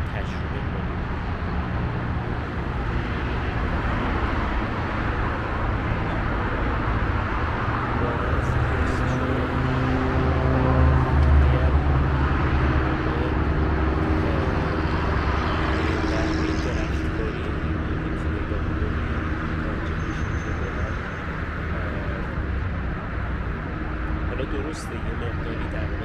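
Steady traffic noise from a multi-lane highway, cars and larger vehicles rolling past, with a deeper engine rumble that swells loudest around the middle.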